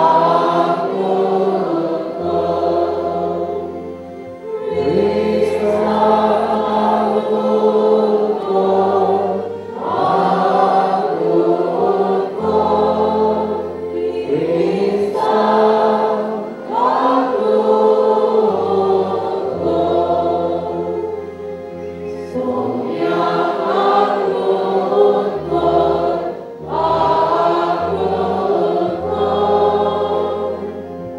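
A mixed church choir, mostly women's voices, sings a hymn through microphones and a PA. The singing comes in phrases of about five seconds with short breaks between them, over low held bass notes.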